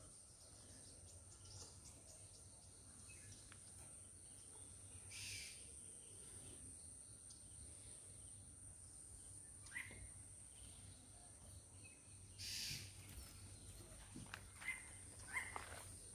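Near silence: quiet outdoor ambience with a faint steady high hiss and a few faint, brief bird chirps scattered through it.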